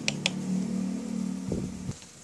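A steady low hum with a few light clicks in the first half second; the hum stops near the end, just after a short low knock.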